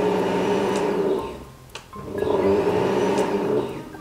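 Countertop blender running with its glass jar empty, switched on with the knob on its base. The motor runs in two bursts of about a second and a half each, with a short gap between them.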